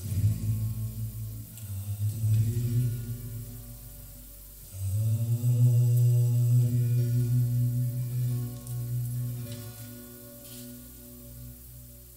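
Low voices in a kirtan holding long chanted notes: one phrase, then a louder second one entering about five seconds in with a slight upward slide, dying away near the end.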